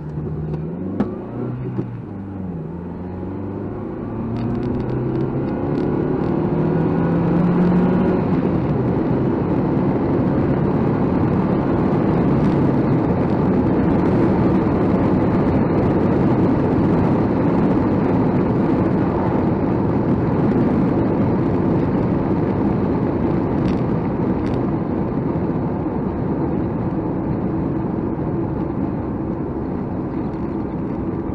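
Nissan Micra K12 heard from inside its cabin, the engine revs rising through the gears, with one dip at a gear change, over the first several seconds. It then settles into a steady drone of engine, tyre and wind noise while cruising.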